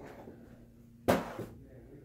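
A sharp knock on a hard surface about a second in, followed by a lighter knock just after.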